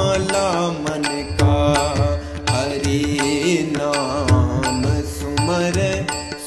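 A man singing a Hindi devotional bhajan in drawn-out, wavering notes over recorded accompaniment with a steady drum beat.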